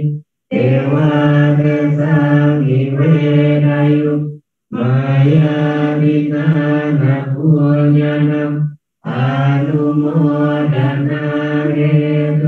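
Buddhist Pali devotional chanting (paritta), recited into a microphone on a near-monotone in phrases of about four seconds, with brief breath pauses between them.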